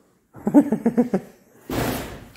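A man laughing briefly in a few short pulses, followed near the end by a short rush of noise.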